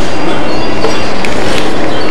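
Loud, steady rushing noise with no distinct event: a tiny body-worn camera's microphone overloaded by its surroundings.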